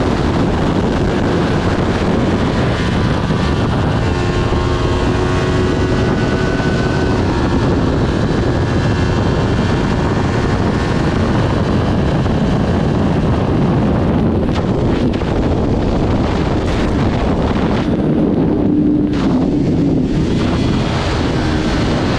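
Heavy wind rush over an onboard camera microphone at racing speed, with the Kawasaki Ninja 400's parallel-twin engine running hard underneath it; the engine's note rises and falls faintly in places.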